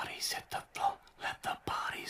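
A voice whispering.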